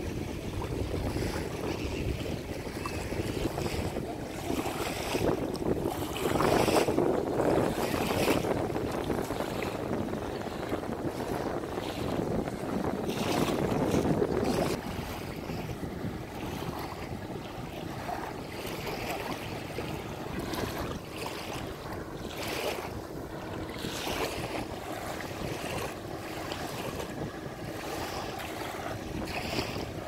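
Wind buffeting the microphone over water lapping at the river shore, a steady rushing noise. It gusts louder in the first half, then drops suddenly a little before halfway.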